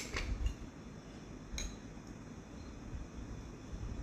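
Metal utensil knocking and scraping against a jar of peanut butter and a plate as peanut butter is scooped out: a sharp click at the start, a few light ticks, another click about a second and a half in, over a faint low rumble.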